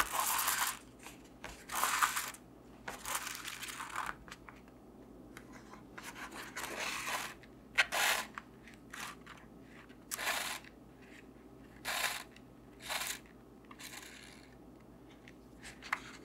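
Thread pulled through the sewing holes of paper signatures while a book is sewn with a French link stitch, heard as a series of about ten short, scratchy pulls, with paper rustling as the folded sheets are handled.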